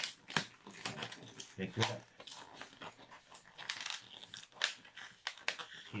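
Long yellow latex modelling balloon being twisted and squeezed by hand, giving a string of short rubbery squeaks and rubs as a section is turned and tucked in.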